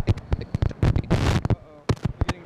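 Crackling audio equipment: a rapid string of loud clicks and pops with a burst of static hiss about a second in, the sound of a faulty connection that the hosts put down to a short.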